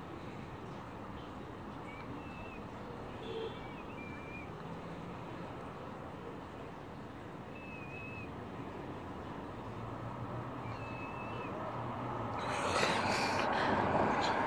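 Steady urban street background noise with a handful of short, high chirps from small birds scattered through it. A louder rushing noise swells near the end.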